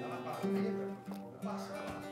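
Acoustic guitar played live and softly, picked and strummed, with held notes.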